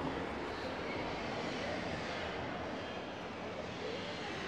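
Steady, even background noise of city street traffic.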